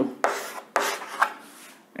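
Chalk writing on a chalkboard: a few scraping strokes in the first second or so, then trailing off near the end.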